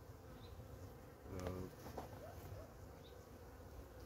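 Honeybees from an open, calmly wintering colony humming faintly and steadily, swelling briefly about a second and a half in.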